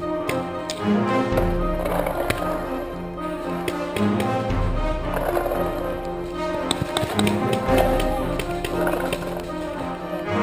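Music with steady held tones and a low bass line that changes about every three seconds, with many short clicks and taps.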